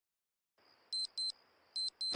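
Digital alarm clock beeping: short, high-pitched electronic beeps in pairs, starting about a second in after near silence.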